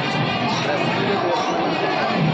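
Crowd babble: many voices talking over one another at once, with no single voice standing out.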